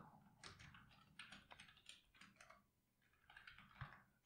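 Faint typing on a computer keyboard: irregular keystrokes, with a short pause a little past the middle before a few more.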